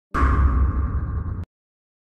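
An edited-in sound effect: a sudden bass-heavy whoosh that fades for over a second and then cuts off abruptly.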